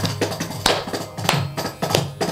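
Kanjira and mridangam playing together in a fast Carnatic percussion passage: dense sharp strikes several times a second, with a loud stroke about two-thirds of a second in, over a steady low tone.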